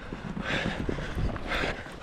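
A runner breathing hard while running up a steep hill, two heavy breaths about a second apart, over running footsteps on a tarmac road.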